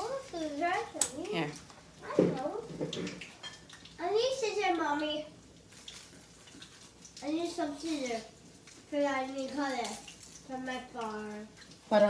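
Speech in short bursts with pauses between them, a child's voice among them; some bursts have a held, sing-song pitch.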